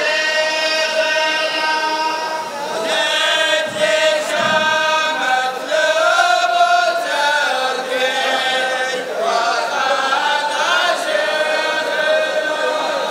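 Group of men chanting a Najdi ardah (sword-dance war chant) in unison, singing long, drawn-out lines that shift in pitch every second or two.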